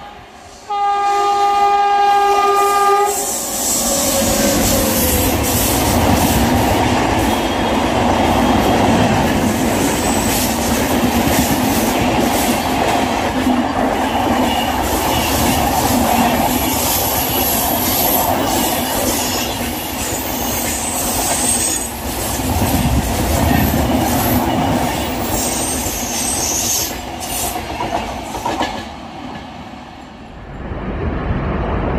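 A train horn blows one steady note for about two and a half seconds. Then an express train of LHB coaches rushes past at speed: a loud, steady rolling of wheels on rail with scattered clicks, which dies away near the end.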